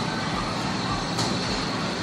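Steady rushing gym background noise while a cable machine is worked through repetitions, with a brief high hiss about a second in.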